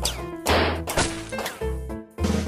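Background music with a steady low beat, punctuated by three sharp hits about half a second apart.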